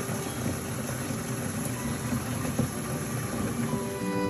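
A stream of water pouring into the plastic clean-water tank of an O-Cedar spin mop bucket as it is filled: a steady, unbroken rush of water.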